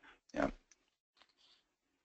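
A single short spoken 'yeah' over a conference-call line, then near silence with a few faint clicks.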